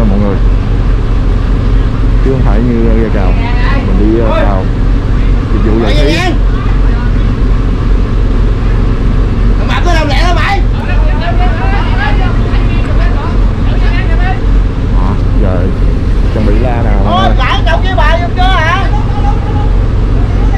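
A fishing boat's diesel engine running at a steady low hum, with men's voices calling out over it now and then.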